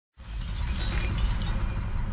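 Glass-shattering sound effect on a title graphic. It starts suddenly a split second in as a dense crash with a deep low rumble under it and sparkling high debris, and runs on.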